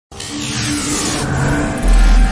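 Cinematic logo-intro sound effect: a whooshing rush, then a deep bass hit near the end.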